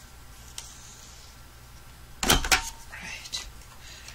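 Stampin' Up! Detailed Trio corner punch pressed down through the end of a cardstock strip, rounding its corner: a quick pair of loud clicks a little past halfway, then a fainter click.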